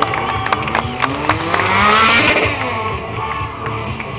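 A stunt motorcycle's engine revving hard, its pitch climbing to a peak about two seconds in and then falling away, over music from loudspeakers.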